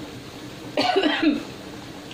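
A woman's brief cough-like vocal sound, about half a second long, coming about a second in, with low room noise around it.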